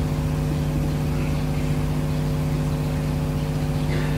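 A steady hum made of several constant tones over a background hiss, unchanging throughout.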